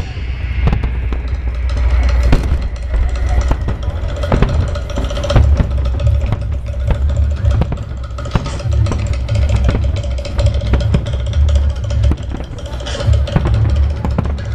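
Aerial fireworks shells bursting in a rapid, overlapping series of deep booms with crackling in between, echoing over open water.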